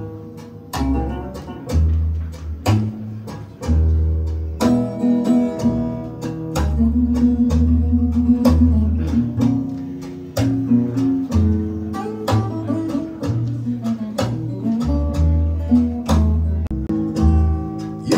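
Recorded music played back over a high-end hi-fi system, a TriangleArt turntable and M100 valve amplifier driving horn loudspeakers: an instrumental passage of guitar over a deep, slow bass line.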